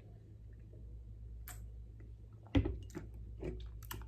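A man swallowing a drink from a glass mug: quiet gulps with a few faint clicks, then a short, louder mouth sound about two and a half seconds in.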